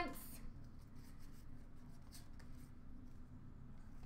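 Faint rustles and light scrapes of cardboard trading cards being handled and slid past one another by hand, over low room tone.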